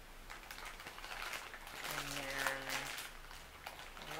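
Clear plastic bag crinkling and rustling as small trinkets inside are rummaged through, with a short hummed 'mmm' about two seconds in.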